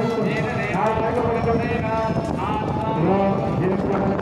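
A voice singing a devotional chant in long, gliding held notes over a fast, rhythmic percussion beat.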